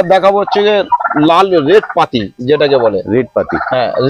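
Speech: a person talking in Bengali, quick and continuous, with short breaks between phrases.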